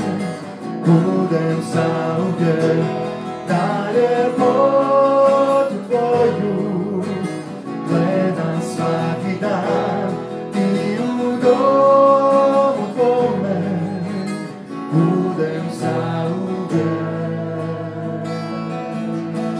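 Live worship song played by a small band led by a strummed acoustic guitar, with singing in long held notes.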